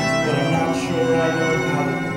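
A small live pit band playing the accompaniment of a musical number, with violin among the steady held notes.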